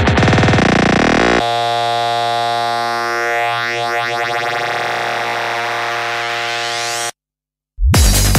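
Psychedelic trance live set in a breakdown. The driving kick and bassline stutter and stop about a second and a half in, leaving a held synthesizer chord with rising sweeps. Near the end everything cuts to a brief dead silence, and then the full beat drops back in.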